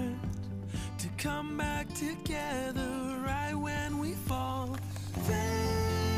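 Background music: a melody of held notes over a steady low bass line.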